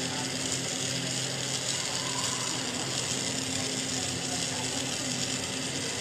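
Glassworking bench torch flame hissing steadily as a glass rod is heated in it, with a steady low hum underneath.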